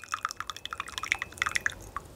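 Light, irregular dripping of water drops, several a second, the patter of rain falling on the yurt roof.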